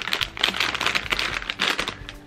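A small foil-lined Lay's Ketchup potato chip bag crinkling steadily as it is held up and handled in both hands.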